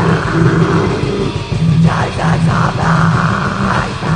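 Melodic death metal demo recording: distorted electric guitars and drums playing continuously at full volume.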